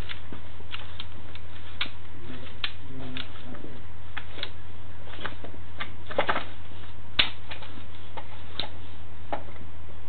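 Sewer inspection camera's push cable being pulled back through the pipe: irregular sharp clicks and ticks, about two a second, over a steady low electrical hum from the camera system. The loudest clicks come about six and seven seconds in.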